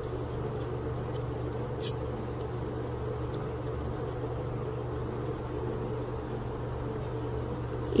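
A steady low electric hum, with a faint click about two seconds in.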